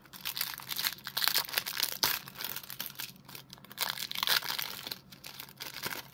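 Clear plastic card wrapper crinkling in the hands as a foil trading card is worked out of it. It is a dense crackle that comes and goes, with its strongest surges about a second in and again around four seconds in.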